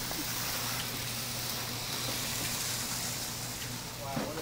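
Several HO-scale slot cars racing around a multi-lane track, giving a steady high whirring hiss from their small electric motors and pickups running along the track.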